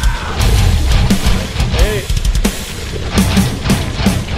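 Loud heavy rock music with guitar and a steady, driving drum beat.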